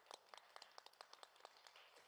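Faint, scattered applause from a small audience, dying away near the end.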